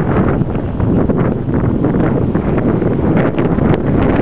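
Wind buffeting the microphone in a low, uneven rumble, with a few short clicks near the end.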